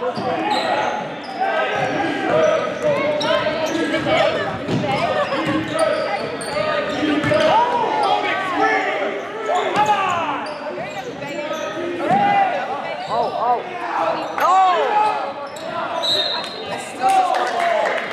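Basketball game on a gym court: the ball bouncing, sneakers squeaking in short rising-and-falling chirps, and voices of players and crowd echoing through the hall.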